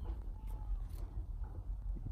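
Faint handling noise: a few light clicks and rustles as plant cuttings are pulled out of peat moss in a plastic tub, over a low steady background hum.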